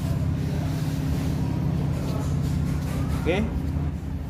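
A steady low machine hum runs throughout, with faint rustling over it.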